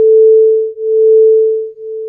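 Two pure sine tones at 440 Hz and 441 Hz played together: one steady tone whose loudness swells and fades once a second, dipping almost to nothing about three-quarters of a second in and again near the end. These are 1 Hz beats from the interference of two slightly different frequencies.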